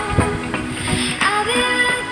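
Background music: an instrumental stretch of a song between sung lines, with held notes and a few sharp hits.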